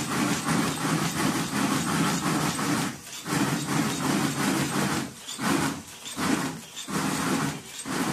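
Sparkler-stick coating machine running: a continuous mechanical clatter with a few brief dips about three, five and seven seconds in.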